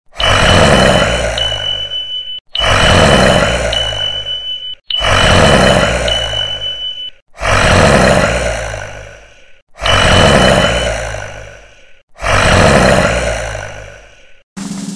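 A loud, noisy recorded sound effect played six times in a row. Each play lasts about two seconds, starts suddenly and fades out, with a short gap before the next. A steady high tone with one small step in pitch runs through most of each repeat.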